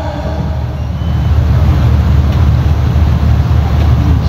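Loud, steady low rumbling background noise with no speech.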